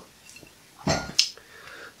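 A short scuff followed by a single sharp click about a second in: a glass beer bottle being set down on a hard surface.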